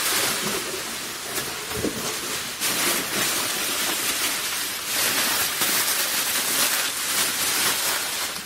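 Plastic bubble wrap crinkling and rustling as it is grabbed and pulled out of a cardboard box packed with foam peanuts, in uneven surges of handling.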